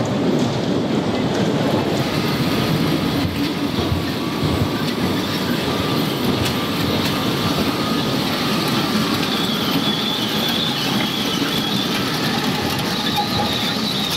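Kiddie ride cars rolling around a small circular steel track: a steady rumble and clatter of wheels on rail. A thin high squeal of the wheels comes in about two-thirds of the way through.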